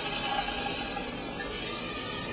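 Pineapple chunks and juice sizzling in a warm saucepan on a gas burner, a steady hiss, with one small tick about half a second in.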